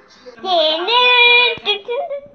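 A child singing one long note that slides up at the start and is then held steady for about a second, followed by a few faint clicks.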